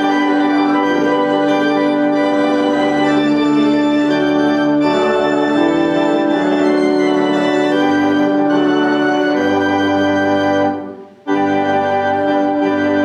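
Organ playing a hymn in held, sustained chords, with a short break about eleven seconds in before the next phrase starts.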